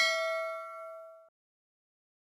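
Notification-bell sound effect from a subscribe animation: a single bright metallic ding with several ringing tones, fading and then cutting off abruptly about a second and a quarter in.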